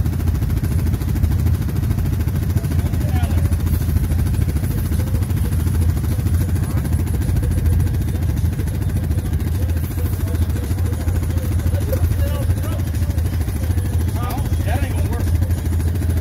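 ATV engine idling steadily close by, with a low, even running note and no revving.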